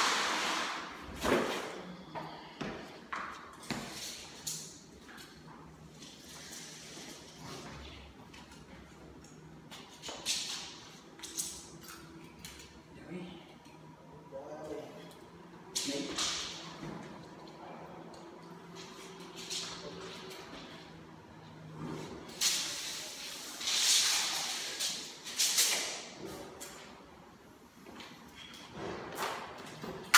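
Proflex floor-underlayment membrane sheet rustling and crackling in irregular bursts as it is unrolled, handled and pressed onto a concrete floor.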